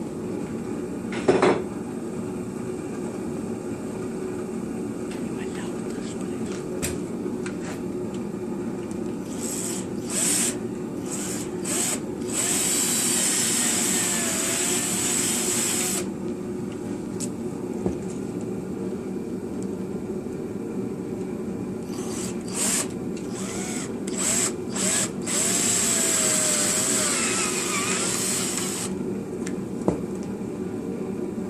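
Cordless drill with a small twist bit boring centre holes into the ends of a firewood blank, marking its centres for mounting on a lathe. It comes in a few short bursts, then two longer runs of several seconds each with the motor speed rising and falling. A steady low hum runs underneath.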